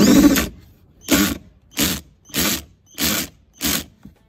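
Ratchet tool turning a battery terminal bolt: six short rasping strokes, about one every two-thirds of a second, the first the longest and loudest.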